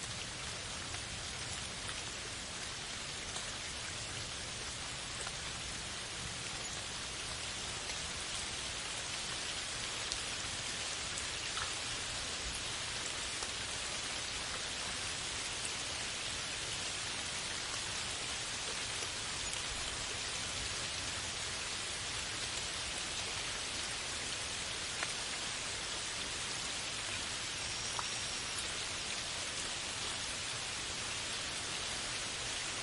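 Steady rain: an even hiss of rainfall with a few sharper individual drop hits.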